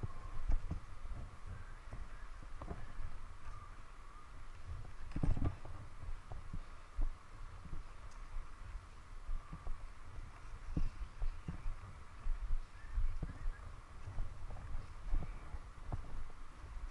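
Skis and poles working slowly down packed snow: irregular soft knocks and clicks of pole plants and edges, the biggest about five seconds in, over a low wind rumble on the microphone.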